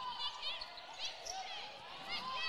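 Basketball shoes squeaking on a hardwood court: several short, high squeaks scattered through a quiet stretch as players move and cut.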